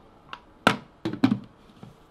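The plastic lid of an electric kettle is snapped shut with one sharp click, after a lighter tap, followed by a few small handling knocks.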